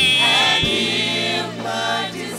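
Gospel worship song: voices singing long, wavering held notes over a band with a steady bass line.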